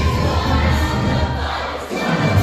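Band playing a musical-theatre song number with a crowd of voices cheering over it, dipping briefly near the end.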